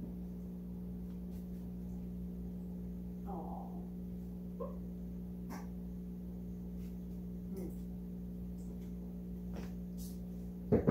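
Steady electrical hum under faint clicks and knocks of things being handled on a kitchen counter, with two brief higher-pitched sounds about three and four and a half seconds in.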